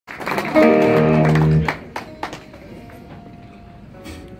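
Semi-hollow electric guitar through an amplifier: a loud chord rings for about a second and is cut off, followed by a few single picked notes and string clicks over a faint held tone.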